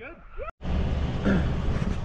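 Inside a moving car: a steady low rumble of engine and tyres with a wide hiss over it, starting suddenly about half a second in.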